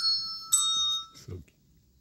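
Children's handbells played one note at a time. One note rings on from just before, and another bell is struck about half a second in, its bright ringing dying away within about half a second. A brief low sound follows.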